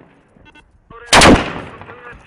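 A single loud gunshot close by, about a second in, with a short echo trailing off.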